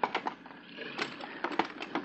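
Several sharp wooden knocks and clatters, a radio-drama sound effect of oars being fetched and handled in a small boat.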